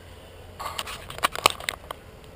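Handling noise on the camera: a quick run of sharp clicks and crackles, starting about half a second in and ending near the end, as a hand grips the camera body close to the microphone.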